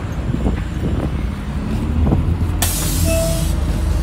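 City bus idling at a stop with a steady low diesel rumble. About two and a half seconds in, a loud hiss of compressed air from the bus's air system lasts about a second, with a short beep inside it.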